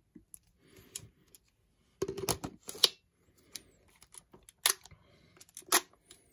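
Sharp clicks and knocks of a lens and Nikon D3 camera body being handled and fitted together, loudest in a cluster about two to three seconds in, with single clicks near the end.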